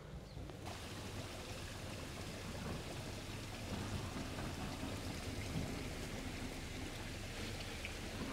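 Steady rush of running water, even and unbroken.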